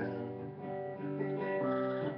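Acoustic guitar being strummed, its chords ringing on between strums.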